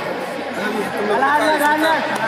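Spectators chattering, with many overlapping voices talking at once.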